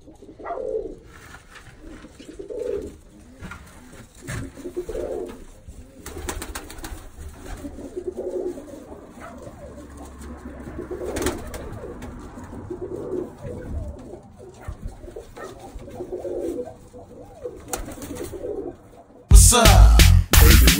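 Birmingham roller pigeons cooing, one low coo after another, with a few light knocks in between. Loud music with a heavy beat cuts in near the end.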